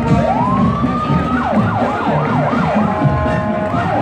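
A siren rises in pitch over about a second, then gives a run of five or six quick falling yelps, and starts rising again near the end, over the marching band's drums.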